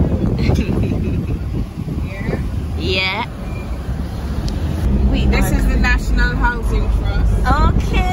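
Road and engine rumble of a moving car heard from inside the cabin, louder from about five seconds in, with brief voices over it.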